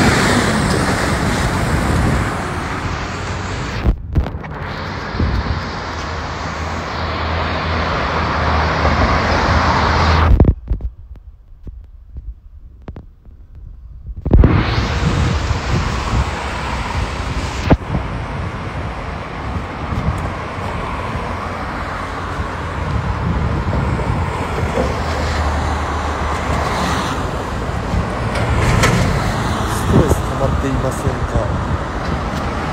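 Outdoor noise on a phone's microphone: a loud, steady rumble of wind on the mic with road traffic beneath it. A few clicks are heard, and about ten seconds in the sound drops away almost completely for about four seconds before returning.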